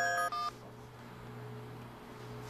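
Mobile phone keypad beeps as a number is dialled, a couple of short tones that stop about half a second in, followed by a faint steady hum.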